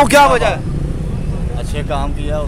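Speech over a steady low background rumble: a man's voice loudly for the first half second, then only the rumble until a quieter voice comes in near the end.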